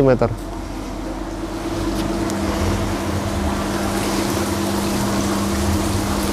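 A machine running steadily, a constant hum with a low, even drone that grows slightly louder about two seconds in.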